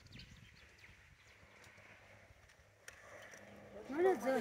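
Quiet outdoor ambience with faint high chirps, a single click about three seconds in, and a drawn-out pitched call starting right at the end.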